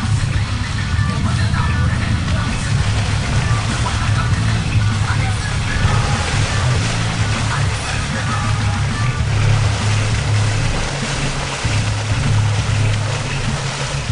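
Suzuki ATV engine running under load as it churns through deep, muddy water, with water sloshing around it; music plays throughout.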